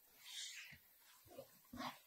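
Near silence: room tone with two faint, brief soft sounds, one about half a second in and one near the end.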